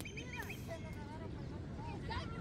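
Faint distant voices and short chirping calls over a steady low rumble.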